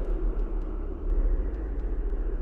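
A steady, low, rumbling drone of noise, like distant engine noise, running as a background bed with no clear pitch or rhythm.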